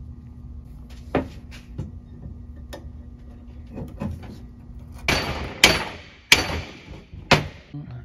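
Knocks of a hand tool striking the steel control arm and its offset polyurethane bushing: a few faint clicks, then a scraping burst about five seconds in and three loud, sharp strikes about a second apart near the end.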